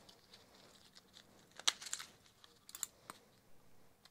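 Faint handling noise during suturing: a few short, sharp clicks and crinkles of instruments and packaging, one about halfway through and a small cluster later on.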